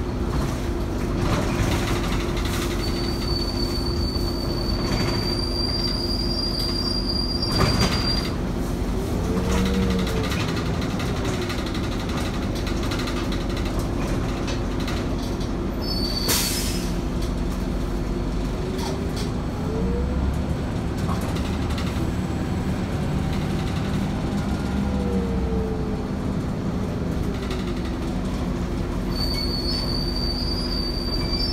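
Inside a moving RTS transit bus: the steady drone of the engine and drivetrain, with a whine that rises and falls three times. A high, steady squeal runs for several seconds about three seconds in and again near the end, and there is a sharp knock about eight seconds in and a short hiss about sixteen seconds in.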